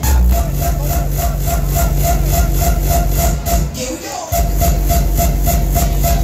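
Electronic dance music from a DJ set, played loud over a club sound system, with a fast, steady, bass-heavy kick beat. The bass cuts out for a moment about four seconds in, then the kick comes back.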